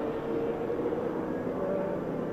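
IndyCar race cars' twin-turbo V6 engines running in broadcast track audio, a steady hum with a faint held tone.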